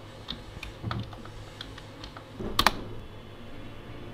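Typing on a computer keyboard: a dozen or so separate key clicks at an uneven pace, with one much louder clack about two and a half seconds in.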